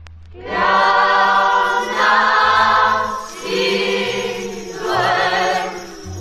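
A choir singing a Christmas carol in long held phrases with vibrato, over a low bass accompaniment, coming in about half a second after a short lull.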